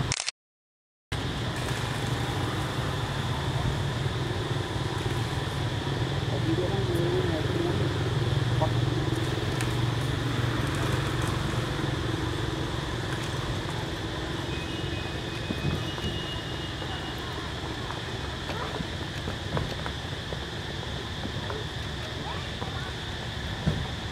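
Steady outdoor background noise with a low hum and faint distant voices. The sound cuts out completely for under a second near the start.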